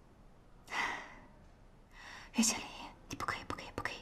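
A person whispering in breathy bursts, with a brief voiced sound about halfway through and a run of quick soft clicks near the end.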